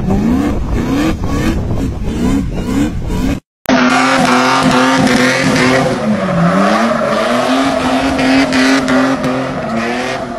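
Jeep Cherokee XJ engine revving hard in quick repeated rises, about two a second, as the wheels spin in sand. After a brief cut to silence, an XJ's engine is held at high revs while it spins on pavement with tire squeal, its pitch dipping once and climbing again.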